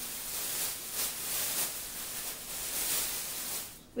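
Thin plastic shopping bags rustling and crinkling in irregular swells as an item is dug out of them.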